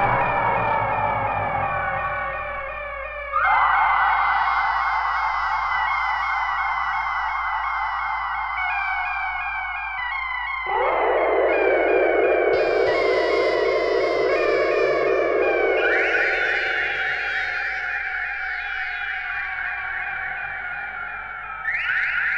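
Electronic synthesizer music: dense layers of rapidly repeating, slightly gliding tones that jump abruptly to new pitches every few seconds, dropping to a lower register about eleven seconds in and adding a high layer soon after.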